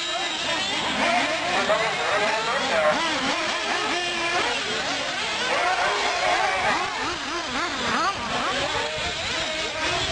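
Several radio-controlled off-road racing buggies running on the track together, their motors revving up and down: many overlapping pitches rising and falling continuously as they accelerate and brake.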